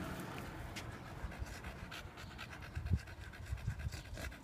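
Staffordshire bull terrier panting, faint, quick and even: a dog tired out from a walk.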